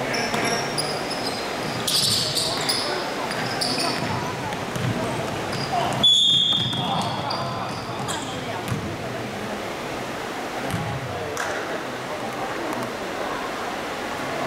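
Indoor basketball play echoing in a sports hall: a ball bouncing on the hardwood court and sneakers squeaking on the floor, with a longer, louder high squeal about six seconds in.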